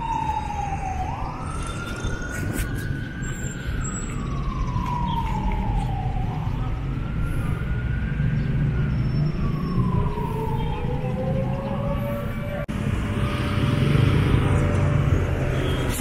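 A siren wailing in slow cycles: the pitch jumps up quickly and then slides slowly down, about once every five seconds, with a lower rising tone joining near the end. Street traffic rumbles underneath.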